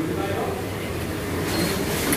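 A steady low rumble with faint voices in the background, muffled as the phone's microphone is carried and brushed against clothing.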